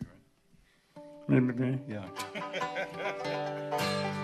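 Banjo and acoustic guitars picking scattered notes after a brief hush, with a steady guitar strum coming in near the end.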